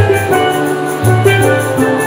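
Steel band playing: steelpans ringing out a melody over low bass-pan notes, with a steady quick beat from a drum kit.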